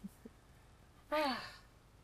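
A woman's breathy sigh, falling in pitch, about a second in and lasting half a second.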